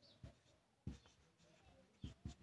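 Faint scratching of a marker pen writing digits on paper, with a short, sharper stroke a little under a second in.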